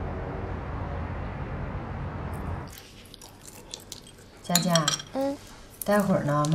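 A low steady hum for about the first two and a half seconds, then a quieter room where chopsticks and bowls clink lightly at a meal table. A short voice is heard about four and a half seconds in.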